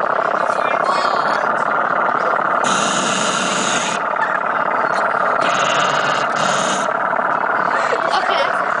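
Indistinct chatter of several people talking at once, with two stretches of hiss a few seconds in.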